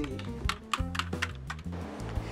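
Computer keyboard keys being typed on, a quick run of about ten clicks starting about half a second in, over soft background music.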